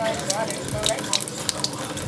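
Water running steadily from a Nexus X-Blue water ionizer into the sink, a hiss with a fine crackle in it, while the unit is set to alkaline level one. A faint brief pitched sound comes in the first second.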